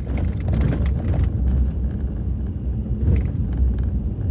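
Steady low rumble of a vehicle driving, heard from inside the cab: engine and road noise with no speech.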